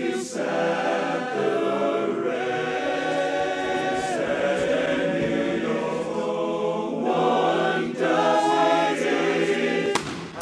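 A men's barbershop chorus singing a cappella in close harmony, holding sustained chords that shift every second or two.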